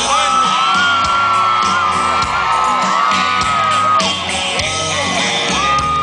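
Live country band playing an instrumental break, a fiddle holding long sliding notes over guitar, keyboard, bass and drums. Whoops and cheers come from the crowd.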